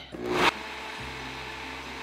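Beast countertop blender running, blending a thick banana-oat pancake batter: a short clatter as it starts, then a steady whir, with a deeper motor hum coming in about a second in.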